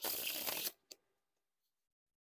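A deck of Theory11 Red Monarchs paper playing cards being closed up from a fan: a short papery rustle lasting under a second, then a single light click. The deck is broken in and fans and closes without clumping.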